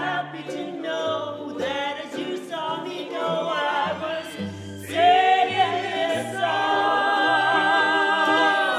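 Voices singing with vibrato over a small ensemble of violin, trumpet, cello and ukuleles. About five seconds in the music swells louder, and the voices hold a long note with wide vibrato.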